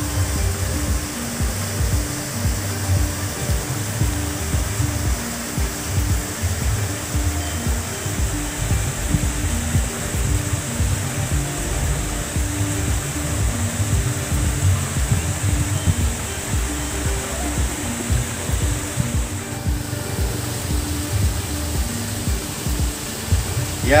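Wind buffeting the microphone in a steady, gusty low rumble, with soft background music of short held notes underneath.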